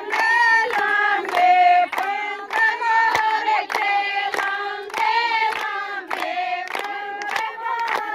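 Women singing a Haryanvi folk song together, with handclaps keeping a steady beat about three times a second.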